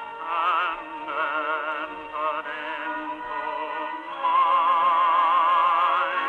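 A 78 rpm shellac record played on a Columbia Grafonola cabinet phonograph: baritone and chorus singing with vibrato over organ and orchestra, with a thin, narrow-band gramophone sound. About four seconds in the voices rise to a loud held note.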